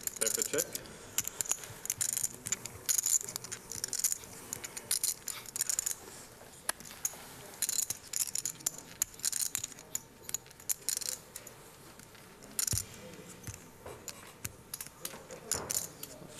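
Poker chips clicking and clattering as a player counts out his bet, cutting stacks and slamming them down hard onto the table in irregular bursts of sharp clicks. The forceful chip handling is read by a commentator as a possible tell.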